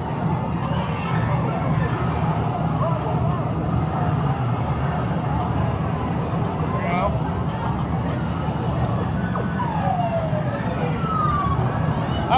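Busy arcade ambience: a steady hum of machines with background chatter. Near the end, two short falling electronic tones from arcade game sound effects.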